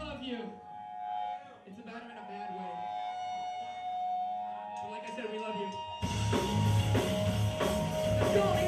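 Held electric guitar notes ring over crowd chatter. About six seconds in, the full band starts playing loud punk rock with drums and guitars.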